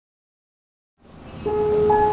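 Silence, then piano music fades in about a second in, with a held note ringing from about halfway.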